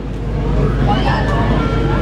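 Steady low rumble of outdoor background noise under faint murmuring voices, with a thin steady tone, then a slightly lower one, in the second half.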